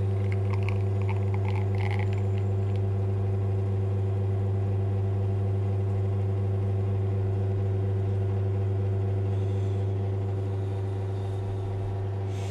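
Espresso machine pump humming steadily while an espresso shot is extracted, with a few faint light ticks in the first couple of seconds. The hum eases slightly near the end.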